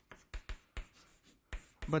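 Handwriting: a run of short, scratchy writing strokes with a few soft low thumps, as a graph is sketched by hand.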